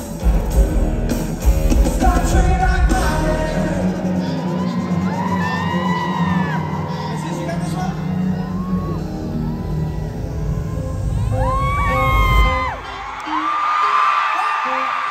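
Live pop band playing the end of a song through a hall PA: a heavy bass beat for the first few seconds, then held chords, with the crowd screaming and whooping over it twice. The music drops away shortly before the end.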